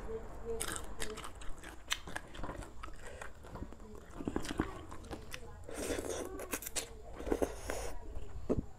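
Mouth sounds of a person eating peeled cooked shrimp and soft rice noodles: chewing and biting, with many short wet clicks and smacks.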